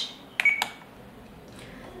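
A RadioLink RC8X transmitter's touchscreen being tapped: two quick clicks about half a second in, the first with a short electronic beep as the screen changes page.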